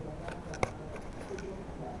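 A low murmur of voices, with one sharp click a little over half a second in.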